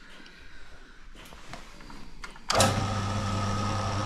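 A mill-drill's motor switched on about two and a half seconds in, then running steadily with a whine as it spins a large hole saw that has not yet reached the work. Before it starts, a few faint clicks of handling.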